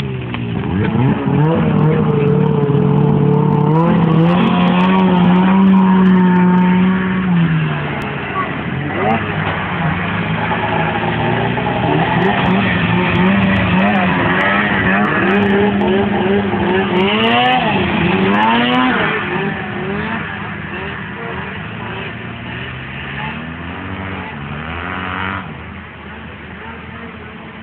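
Snowmobile engine revving: it holds high revs for several seconds, drops off, climbs again with several rises and falls in pitch, then eases down to a lower run near the end.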